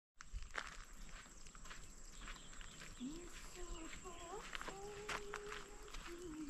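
Footsteps crunching on a gravel and stone path, in irregular steps. From about halfway a drawn-out, voice-like call wavers in pitch and then holds one note to the end.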